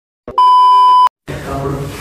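A steady test-tone beep at about 1 kHz, lasting under a second, the sound that goes with TV colour bars. A short silence follows, then a low hiss.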